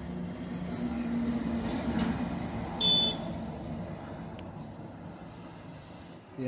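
A small quadcopter drone's motors hum as it takes off, and the hum fades as it climbs away. A short, high electronic beep sounds about three seconds in.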